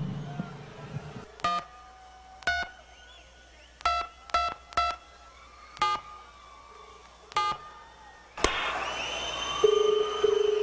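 Telephone keypad tones: seven short two-note dialing beeps at uneven intervals as a number is dialed over the stage sound system. About 8.5 s in, a burst of crowd noise rises, and a steady ringing tone begins near the end.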